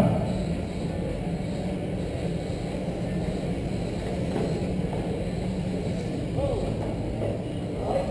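1/10-scale radio-controlled race cars running laps on an indoor track: a steady wash of motor and tyre noise in a large hall, with a faint wavering whine about six and a half seconds in.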